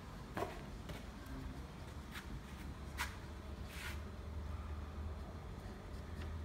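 Faint writing sounds: a few short ticks and scratches, with one longer scrape a little before the middle, over a low steady hum.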